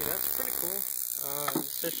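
Plasma-globe flyback driver powering a Cockcroft-Walton voltage multiplier, giving a steady high-pitched whine and hiss. An electrical buzz from the running setup cuts off abruptly a little under a second in.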